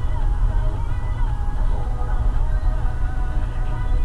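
Steady low rumble of a car heard from inside its cabin, with music playing faintly over it.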